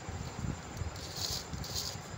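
A hand wiping soaked rice grains off a steel plate into a cooking pot: soft rustling and scraping with light, irregular knocks, and two short hissy scrapes in the second half.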